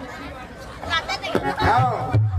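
A man's voice speaking. It comes in about a second in, after a short lull that follows the end of the music.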